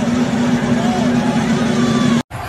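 Arena crowd chatter with a steady low tone held underneath, which cuts off suddenly just after the end.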